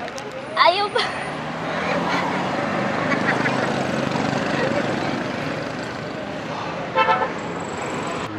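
A motorcycle passing close by on the road, its engine growing louder and then fading over a few seconds, followed by a short vehicle horn toot about seven seconds in.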